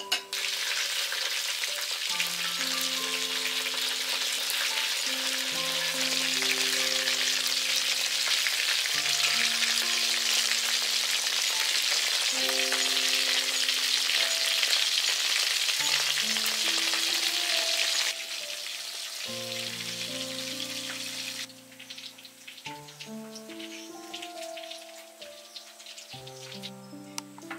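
Breaded shrimp and potato rolls deep-frying in a wok of hot oil: a loud, dense sizzle that starts suddenly, eases about two-thirds of the way through, and dies down a few seconds later as the rolls come out. Background music with slow, held notes plays underneath.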